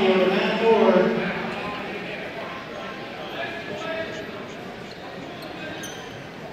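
A man's voice announcing wrestlers and teams over the gym's public address for the first second and a half, then the general chatter and clatter of a gymnasium crowd.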